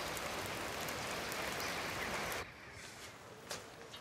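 Steady rain-like hiss of outdoor background ambience that drops away suddenly about two and a half seconds in, leaving quieter indoor room tone with a faint knock near the end.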